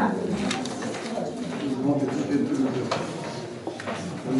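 Indistinct voices of several people talking in a crowded room, with a few light clicks and knocks.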